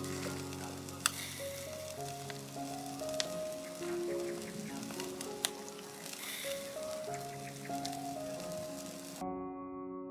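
Chicken pieces sizzling on a charcoal grill, a steady hiss with a couple of sharp crackles, under background music. The sizzling cuts off near the end, leaving only the music.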